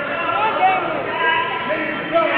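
Only speech: people talking, with no words made out.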